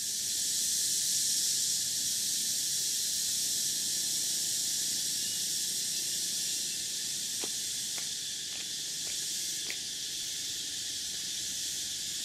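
A steady, high-pitched insect chorus droning in tropical forest, with a few faint light clicks a little past the middle.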